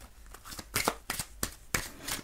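A deck of oracle cards being shuffled by hand: a run of short, sharp card snaps, several in the second half.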